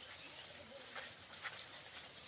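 Faint footfalls of a herd of goats walking along a dirt path: a few light hoof taps, the clearest about a second in and half a second later.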